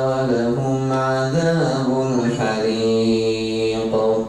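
A man's voice reciting the Quran in Arabic in a slow, melodic chant through a microphone, holding long drawn-out notes that step up and down in pitch. The phrase breaks off at the end.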